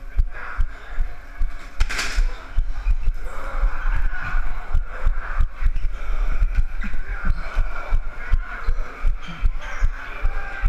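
Running footfalls thudding through a body-worn action camera, about three steps a second on a hard floor, with a short sharp burst of noise about two seconds in.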